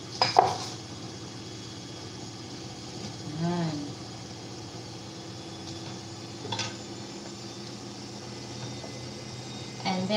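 A metal spoon clinking against a stainless-steel cooking pot while stirring: a loud clatter about half a second in and a smaller clink later on, over a low steady hum.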